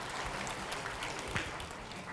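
Audience applauding: many people clapping together at a steady level.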